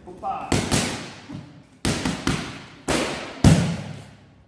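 Boxing gloves and kicks striking leather focus mitts in a fast combination: about six sharp smacks, with the last and heaviest one about three and a half seconds in.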